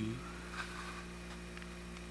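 Steady low hum with faint background hiss.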